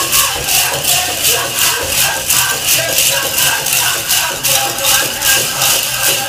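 Metal cones of a jingle dress clinking together in a quick, even rhythm as the dancer steps in time to powwow drum music.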